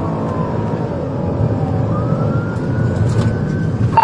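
Police patrol car's siren wailing, its pitch falling slowly through the first two seconds and rising again after, heard inside the cabin over the steady drone of the engine and tyres during a pursuit.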